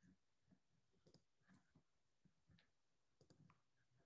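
Near silence, broken only by about a dozen very faint, irregularly spaced clicks.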